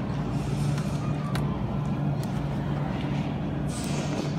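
Steady low machine hum over background noise, with a few faint clicks and a short hiss near the end.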